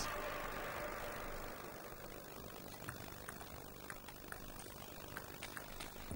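Table tennis ball being struck back and forth in a rally, a series of faint sharp ticks a fraction of a second apart, over a low arena murmur that fades in the first second or so.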